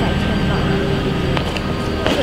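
Steady drone of city street traffic running under a conversation.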